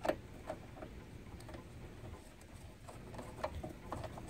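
Light, irregular clicks and ticks of a small screw being started by hand and turned with a screwdriver into the top of a reef light's mounting-leg bracket. The sharpest click comes right at the start.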